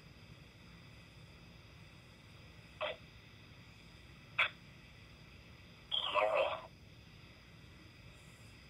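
Quiet hiss of a recorded phone-call line. There are two short clicks, about three and four and a half seconds in, and a brief word or murmur from a voice about six seconds in.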